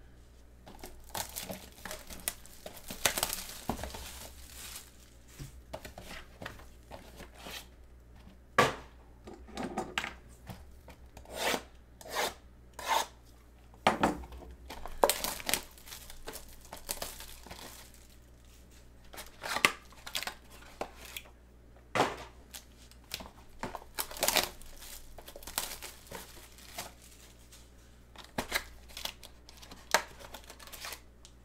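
Plastic wrap and cardboard of a sealed 2021 Absolute Football trading-card box being torn open and handled, with the foil pack inside rustling: irregular crinkling, tearing and sharp clicks.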